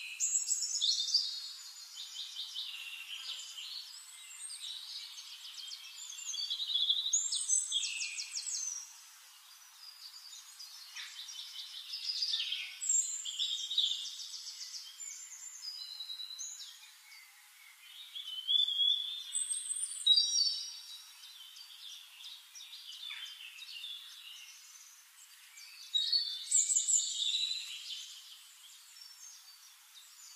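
A songbird singing in phrases of rapid trills and high sweeping whistles. Each phrase lasts a second or two and comes back every few seconds, with fainter chirps between.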